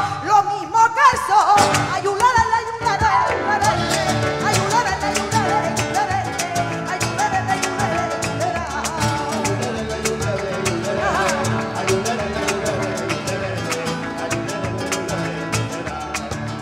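Live flamenco bulerías: a woman's voice singing with wide vibrato, her line ending about three seconds in, over flamenco guitar. After it the guitar, cajón and handclaps (palmas) carry on in a quick rhythm of sharp claps and strikes.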